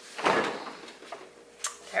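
Stainless steel refrigerator door pulled open: a short swish as the door seal lets go about a quarter second in, then a single sharp click near the end.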